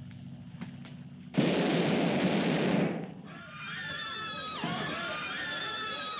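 Gunfire: a sudden loud blast about a second and a half in, with a second one close behind, the din lasting just over a second. Dramatic orchestral film music with held notes follows.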